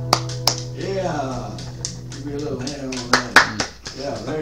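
A strummed acoustic guitar chord rings out and fades over the first second. It is followed by a few sharp clicks and soft string sounds from the guitar, under a person's voice.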